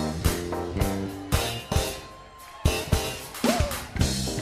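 Live funk band playing, with drum kit hits over bass and chords. The band drops out briefly a little after two seconds in, then comes back.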